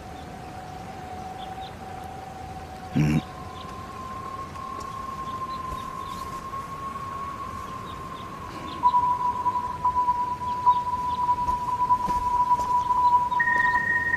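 Soundtrack drone of long, steady held tones, with the pitch stepping up to a new note every few seconds and a higher note joining near the end. A single short knock comes about three seconds in.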